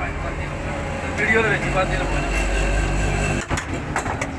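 Indistinct voices over a steady low rumble like passing traffic, which swells in the middle, with a sharp click near the end.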